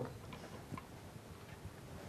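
Quiet room tone with a few faint, irregularly spaced clicks.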